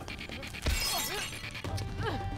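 Film fight-scene soundtrack: a sudden crash of something breaking about two-thirds of a second in, trailing off in a brief hiss, over background music.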